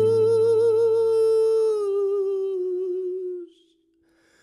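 A man's voice holds one long note with vibrato over a fading acoustic guitar note. The sung note sags slightly in pitch and cuts off about three and a half seconds in.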